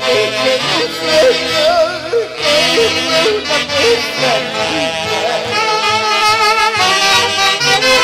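Live music from a Peruvian orquesta típica: saxophones and other melody instruments playing a line with wide vibrato over violin and harp accompaniment, loud and continuous.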